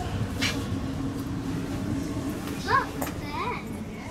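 Steady low hum inside a sleeper train carriage, with short voice sounds from other people a little under three seconds in and again about half a second later, the first the loudest thing here. A brief rush of noise sounds about half a second in.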